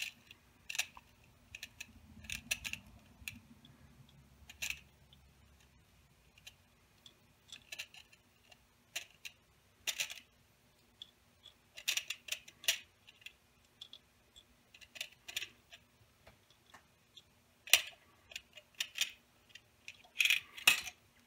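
Small steel BBs clicking against each other and against 3D-printed plastic as they are tipped from a plastic tray into a bearing roller cage: sparse, irregular light clicks with quiet gaps between.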